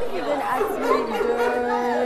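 Several voices talking over one another: studio chatter among the host and contestants.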